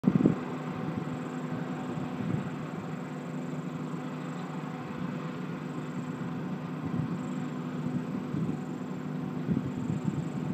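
An engine running steadily, a low even hum with a brief louder burst at the very start.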